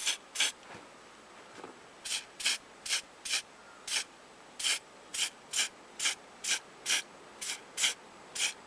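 Aerosol spray-paint can of white paint, sprayed in about fifteen short hissing bursts, roughly two a second, with one pause of about a second and a half near the start.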